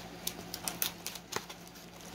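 Paper and packing tape crackling and crinkling in a series of short, sharp clicks as hands work open a taped kraft-paper mailer envelope.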